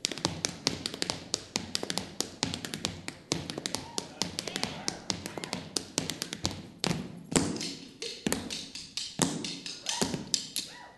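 Tap dancing: rapid clicking of metal-plated tap shoes on the stage floor, with a few heavier accented strokes around seven and nine seconds in.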